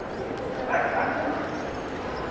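A dog barking once, a short yelp about three-quarters of a second in, over the chatter of a crowd of passers-by.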